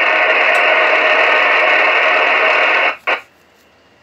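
Steady static hiss from an amateur radio transceiver receiving in single-sideband mode, with no signal on the channel. It cuts off about three seconds in, a short second burst follows, and then it is quiet.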